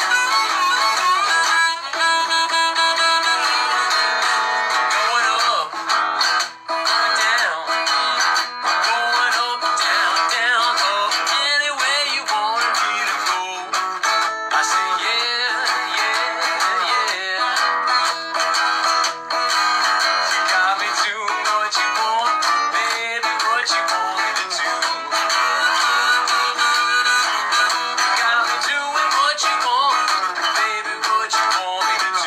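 Strummed guitar with a neck-rack harmonica played over it, then a man's singing voice over the guitar.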